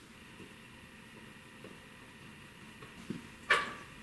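Hard plastic and metal parts of a portable DCC player being handled: a light click, then one sharp snap about three and a half seconds in.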